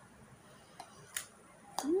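Mouth-close crunching of a firm, unripe red guava being bitten and chewed: a few short, crisp crunches in the second half. Near the end, an appreciative "hmm" hum that rises and then falls in pitch.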